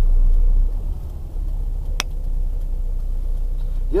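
Car engine and road rumble heard from inside the moving car's cabin, a deep steady rumble that is louder for the first half-second and then eases off. A single sharp click sounds about two seconds in.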